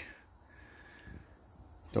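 Insects chirring outdoors: a steady, high-pitched drone with little else beneath it.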